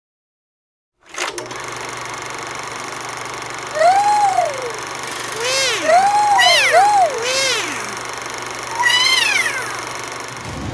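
Cartoon sound effects: a click about a second in starts a steady whirring hum like a running film projector. Over the hum, cute robot voices make a series of short sliding 'ooh' calls that rise and fall in pitch, several close together in the middle and one more near the end.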